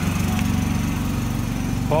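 Small petrol engine running steadily at close range: a low, even drone with a fast pulse.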